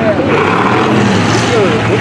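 Dirt-track race cars' engines running at low speed around the track, a steady drone that rises slightly in pitch partway through.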